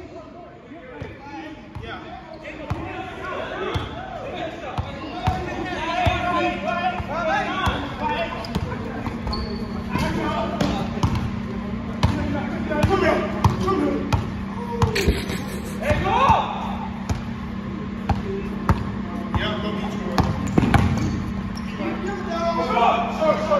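Basketball bouncing on a hardwood gym floor, a run of short thuds from dribbling during a pickup game, with players' voices over it. A steady low hum comes in about four seconds in.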